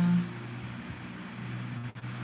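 A woman's held voice trails off just after the start, leaving a low steady hum with a faint even hiss behind it.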